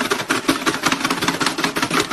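Toy pie-in-the-face game's motorised mechanism whirring with a fast, even clicking rattle, about a dozen clicks a second, while its splat hand is waiting to swing.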